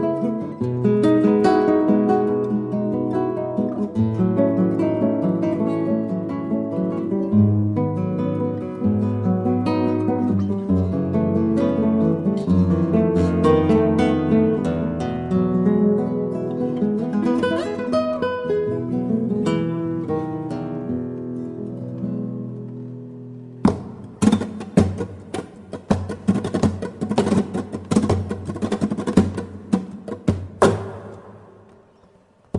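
Acoustic guitar music: held, ringing notes and chords that slowly fade. About three-quarters of the way in, it switches suddenly to rapid, percussive strumming.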